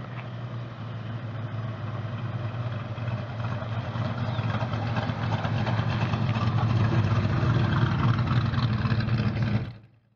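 Engine of a custom 1941 Ford Sedan Delivery street rod running as the car drives up and passes close by: a steady low drone that grows louder as it approaches, then cuts off suddenly near the end.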